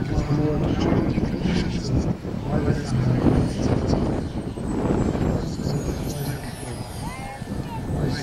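Model jet's turbine whining high and falling slowly in pitch as the jet touches down and rolls out on the runway, over indistinct talking.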